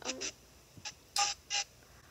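A person making a few short, sharp whimpers in quick succession, mock crying. The three loudest come about a second in, with fainter ones near the end.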